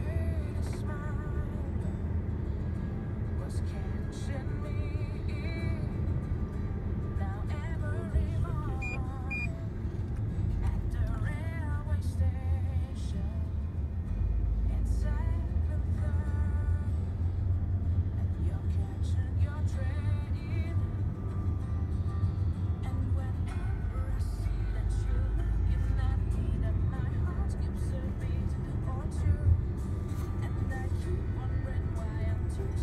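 Steady low rumble of a road vehicle driving, heard from inside the cabin, with music playing over it. The rumble gets deeper about halfway through.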